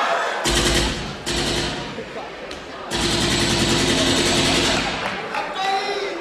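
Three loud bursts of rapid, rattling pulses played over the hall's speakers as a stage sound effect; the longest lasts about two seconds and stops about five seconds in.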